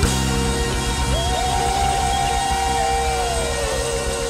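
Live band music with electric bass: a sustained chord holds, and over it one long high note slides up into pitch about a second in and falls away near the end.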